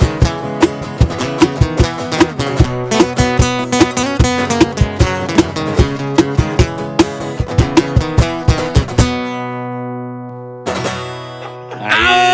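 Two acoustic guitars strumming over a cajón beating steadily, about three strokes a second, in an instrumental passage. About nine seconds in the beat stops and a chord is left ringing as it fades, and one more chord is struck near the end.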